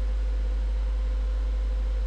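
Steady low electrical hum with a faint thin whine and hiss, the recording's background noise, with no other sound.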